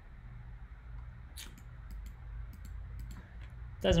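Scattered light clicks of a computer mouse, a few at a time, over a low steady hum.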